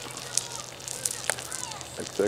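Wood fire burning with engine oil on it, crackling with a few sharp pops about half a second and just over a second in.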